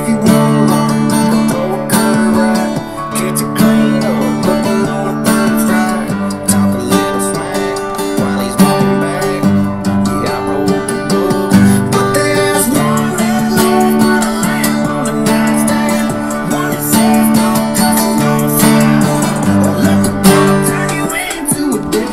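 Acoustic guitar strummed in a steady down-up rhythm, going back and forth between D and G chords and hitting the bass note of each chord before the strums.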